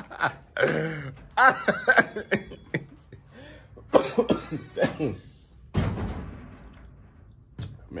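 A man coughing several times, with short voice sounds between the coughs.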